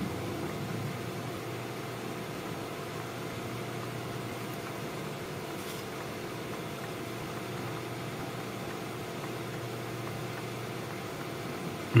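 Steady low hum with a faint even hiss: machine background noise in a small room, with no distinct events.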